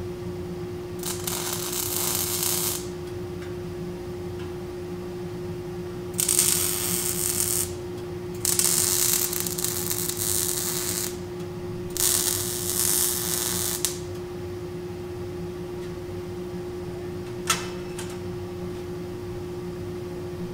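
MIG welding a steel rake onto a circular saw blade in four short runs, each one to three seconds long, with pauses between them. A steady hum runs underneath throughout, and a single sharp click comes near the end.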